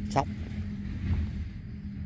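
A man says a single word, then a steady low hum carries on underneath.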